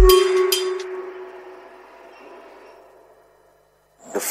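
The end of an electronic music track: the bass cuts out and the last ringing, chime-like notes fade away over about three seconds.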